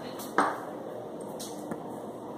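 A single sharp tap about half a second in, ringing briefly before it fades, over a faint steady hiss, with a smaller tick later.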